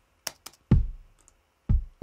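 Kick drum of an electronic beat playing back through studio monitors, two deep hits about a second apart, each with a low decaying tail, preceded by a couple of sharp clicks. It is the unprocessed 'before' sound of the kick, before the heavy EQ and compression that centre it in the sub region.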